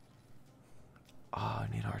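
Quiet room tone with a few faint clicks, then a man's voice starting about a second and a half in.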